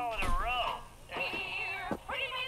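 High-pitched Muppet character voices from a TV show: wordless, squeaky vocal sounds that glide up and down, then a long, high, wavering held note in the second half.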